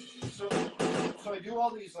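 Home demo recording playing back through a studio monitor speaker: a few loud drum-machine hits in quick succession in the first second, then a man's voice near the end.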